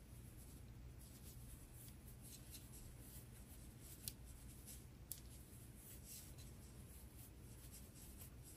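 Near silence with faint scratchy rustling of yarn being drawn through loops on a large plastic crochet hook while double crochet stitches are worked. Two light ticks come about four and five seconds in.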